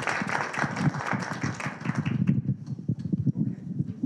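Audience applauding, the clapping dying away about two seconds in, then scattered knocks and a low murmur as the room breaks up.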